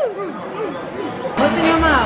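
Indistinct chatter of several voices, with a louder, higher voice breaking in about one and a half seconds in.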